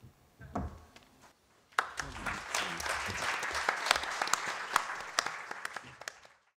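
Audience applauding. The clapping starts suddenly about two seconds in, holds as a dense steady patter and begins to taper off near the end.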